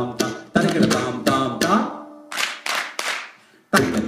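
Indian percussion: tabla and ghatam strokes with ringing pitched tones, thinning out about halfway. A short noisy burst follows, then a brief near-silent gap, and the drumming comes back loud and dense just before the end.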